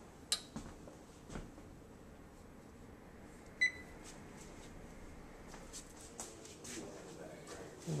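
Wall oven's electronic control panel giving one short beep about three and a half seconds in, as a keypad press sets the cook timer, with a couple of faint clicks before it.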